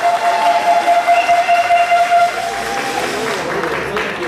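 Audience applauding and cheering, with one long held cheer over the first two seconds.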